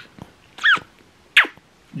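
Small white dog giving two short, high-pitched squeaky whines about three-quarters of a second apart. The first rises and falls in pitch; the second starts sharply and slides down.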